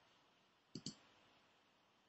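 A computer mouse button double-clicked: two quick sharp clicks about a second in, otherwise near silence.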